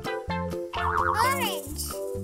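Bouncy children's background music of short plucked notes over a bass line. About a second in comes a brief, loud warbling sound that swoops up and down in pitch, like a cartoon sound effect or a sped-up voice.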